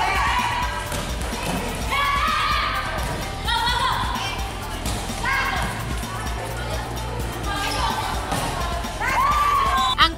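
Game sound of a women's volleyball match: short high-pitched shouts from the players every second or two, with thuds of the ball, under background music.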